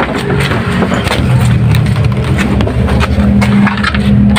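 A vehicle engine running steadily with a low hum, with scattered clicks and knocks over it.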